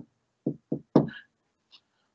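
Three short knocks of a marker against a whiteboard, about a quarter second apart, as an underline and arrow are drawn under the answer.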